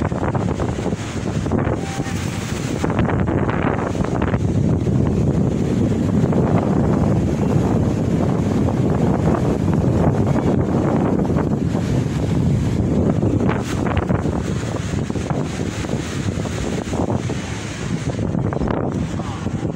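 Wind buffeting the microphone as a steady, gusting low rumble, with sea surf breaking beneath it.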